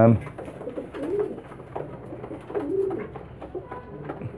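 Domestic pigeons cooing: a few short, low coos that rise and fall, about a second apart, with light clicks and rustles as the squabs are handled.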